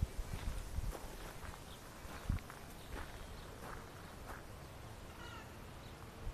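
Faint, short, high animal calls scattered through, with a quick run of chirps near the end, over soft thumps of footsteps on a garden path.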